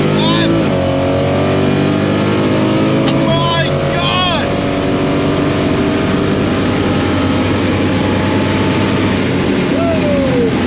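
Chevrolet Nova SS drag car's engine at full throttle during a launch and quarter-mile pass, heard from inside the cabin: the pitch climbs, breaks at a gear change about three seconds in, then climbs again. Passengers shout over it at the start and around four seconds in. From about six seconds the engine note gives way to steadier noise with a thin high whine.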